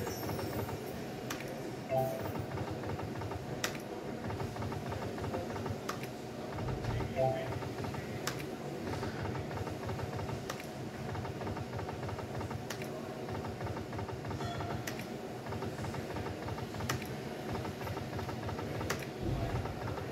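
Casino slot-machine play: a steady background of machine sounds and murmur, with sharp clicks roughly once a second from the slot machine's spin button and reels, and a few short electronic chimes.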